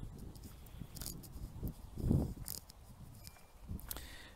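Quiet, irregular footsteps on tarmac, a few soft steps over a faint low background rumble.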